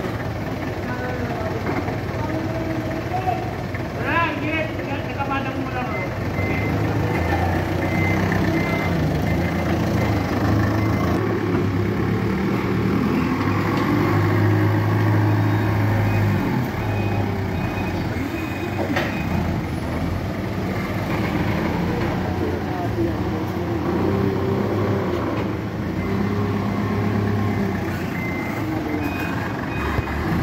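A TCM forklift's engine running and revving as it manoeuvres, its pitch rising and falling. A reversing alarm beeps in short runs, once about six seconds in and again near the end.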